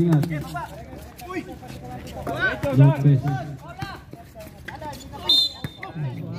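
Men talking and calling out during a basketball game, with scattered sharp knocks of the ball bouncing on the concrete court and a brief high tone about five seconds in.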